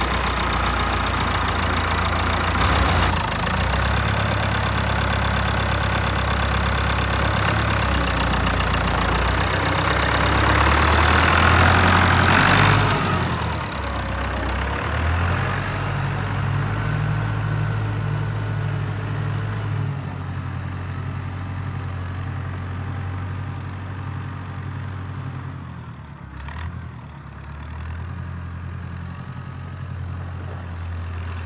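Massey Ferguson 165 tractor engine running just after starting; its note rises and grows louder from about eight seconds in, drops back about thirteen seconds in, then fades steadily as the tractor drives away.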